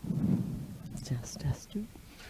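Hushed, near-whispered talking, short broken phrases with a few soft s-sounds about halfway through.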